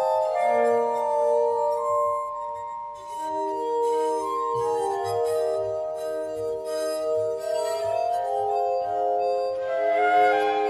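Glass harmonica (armonica) playing slow, sustained chords, its rotating glass bowls rubbed by wet fingertips, giving clear, pure held tones. The chord moves to new notes about three seconds in and again near the end.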